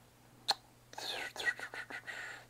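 A sharp click about half a second in, then quiet whispered muttering, over a faint steady low hum.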